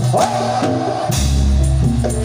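Live Javanese kuda lumping accompaniment music: drums and pitched percussion playing a melodic pattern, with a deep low tone coming in just after a second in.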